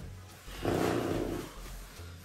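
A man's brief, rough groan about half a second in, lasting about a second.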